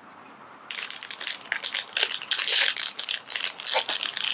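Clear plastic wrapping crinkling and crackling as it is worked off a bottle's pump cap, starting about a second in and going on in rapid crackles.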